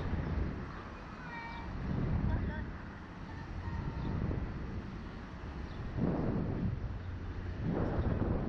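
Wind rumbling over the microphone of a ride-mounted camera, swelling in gusts about two seconds in, around six seconds and near the end, with faint voices under it.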